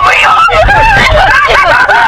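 High-pitched, panicked screaming and shrieking from people inside a car, over the steady rumble of road and engine noise.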